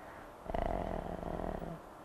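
A woman's drawn-out hesitation "eh", spoken quietly in a creaky, rattling voice for about a second.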